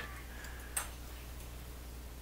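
A single computer mouse click about three-quarters of a second in, over a faint steady low hum.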